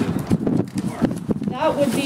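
A rapid, irregular run of knocks or clicks under indistinct talk, then a voice speaking clearly near the end.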